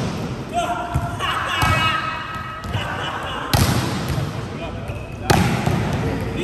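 Volleyballs being struck and bouncing on a sports-hall court in a spike drill, with two loud smacks, one in the middle and one near the end, ringing in the hall. Players' voices call out between the hits.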